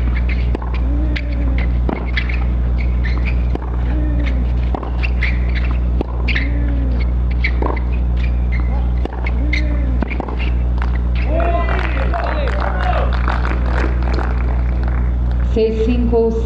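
Tennis rally on a clay court: racket strikes on the ball about every second and a half, each with a short rising-and-falling voiced grunt, over a steady electrical hum. After the point ends, about two-thirds of the way in, voices call out.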